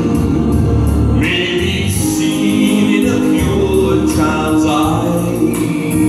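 A man singing a slow musical-theatre ballad solo into a microphone, amplified through PA speakers, over a sustained musical accompaniment.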